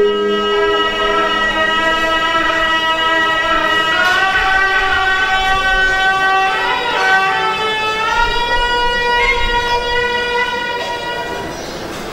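A voice chanting in long held notes that bend slowly in pitch, in the style of Khmer smot funeral chanting. It grows softer near the end.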